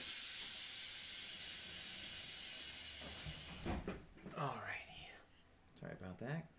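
A steady hiss that starts suddenly and cuts off after about three and a half seconds, followed by short bursts of a voice.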